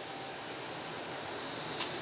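Steady room noise: an even hiss from a fan- or air-conditioning-like background, with no distinct event, and a brief click near the end.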